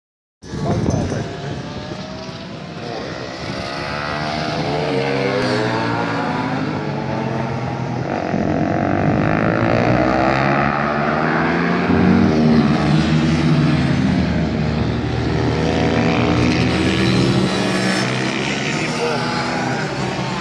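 Small racing motorcycle engines revving up and down through the gears as they lap the circuit, the Moriwaki MD250 passing close about five seconds in.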